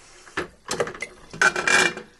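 Soda maker's aluminium bottle housing opened with a click, then a longer scraping rub as the glass bottle is slid out of the metal housing near the end.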